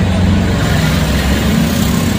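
A motor vehicle engine idling: a steady low hum.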